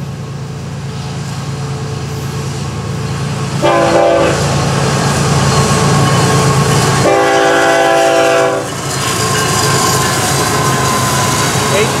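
Florida East Coast GE ES44C4 diesel locomotive approaching and passing at the head of a freight train, its engine running steadily and growing louder. Its horn sounds twice: a short blast about a third of the way in, then a longer one a little past halfway.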